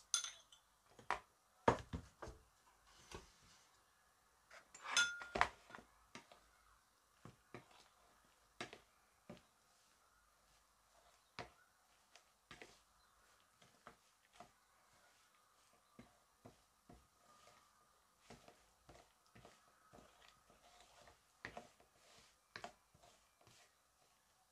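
Metal fork clinking and scraping against a glass mixing bowl while coating sliced beef in cornstarch: irregular light taps, loudest and most frequent in the first six seconds.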